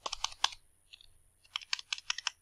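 Computer keyboard typing: a quick run of keystrokes, a pause of about a second, then another run of keystrokes near the end.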